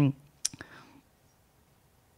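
A spoken word trails off, then a sharp click about half a second in, followed by two fainter clicks. After that there is only faint room tone.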